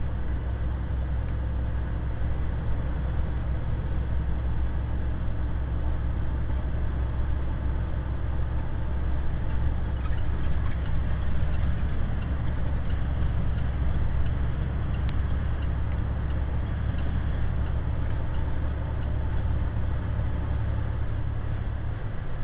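Steady engine and road noise inside the cab of a semi truck driving on a highway, a low rumble that holds even throughout.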